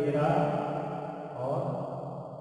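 A man's voice held in long, drawn-out tones rather than ordinary clipped speech, like a stretched-out word or hum, fading a little near the end.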